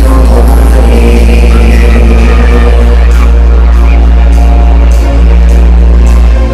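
Loud live band music played through a hall's PA system, with a deep, steady bass held underneath.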